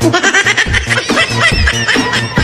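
A child laughing in a run of quick, high-pitched laughs, over electronic dance music with a steady bass beat.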